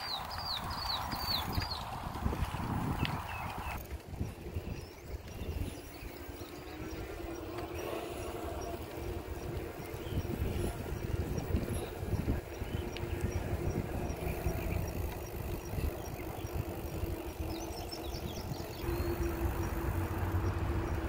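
Wind buffeting the microphone and tyre noise from a bicycle riding on a paved path, with a steady hum joining in about a third of the way through. A bird gives a quick run of short chirps at the start and again near the end.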